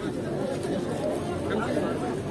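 Crowd chatter: many people talking at once close by, their voices overlapping into a steady murmur with no single speaker standing out.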